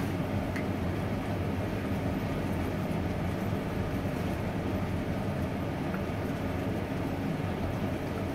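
Steady low drone of a kitchen range hood fan and a lit gas burner, with a few faint taps of a wooden spatula stirring food in a pan.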